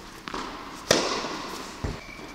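A tennis racket strikes a ball with one sharp crack about a second in, echoing through the indoor tennis hall, with a few lighter ball taps before it and a dull thud near the end.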